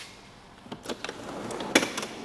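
Aluminium chequer-plate drawer of a 4x4's rear drawer system being pulled open on its runners: a few light clicks, then a sliding run with a sharper click near the end.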